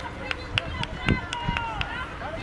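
Players and coaches shouting calls across an outdoor football pitch, one call drawn out in the middle, over open-air ambience. Several short sharp knocks are mixed in.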